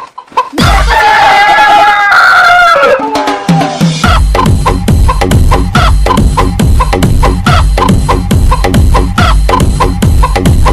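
Dance remix track built on rooster samples: a long rooster crow over a break, then a heavy kick-drum beat comes in about four seconds in, with chopped clucking hits repeating in time.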